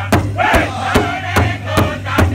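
Powwow drum group singing in high, strained voices over a large shared hide drum struck in unison with padded drumsticks, a steady beat of about two and a half strokes a second.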